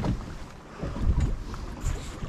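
Low rumble on a fishing boat's deck with wind buffeting the microphone in uneven gusts.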